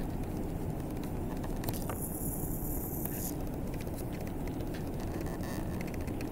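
Steady low background rumble of room noise, with a few faint clicks.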